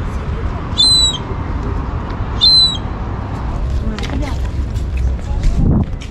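A bird gives a short, high, arched call twice, about a second and a half apart, over a steady low background rumble. Faint voices come in near the end.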